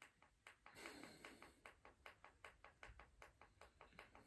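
Faint, rapid light tapping or clicking, about five even taps a second.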